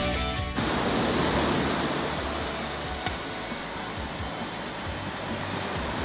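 Background rock music cuts off about half a second in, leaving the steady rush of surf washing up a sandy beach.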